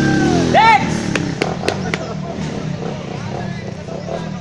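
Dirt bike engine running steadily at low revs, with a person's shouts in the first second and a few sharp clicks between one and two seconds in.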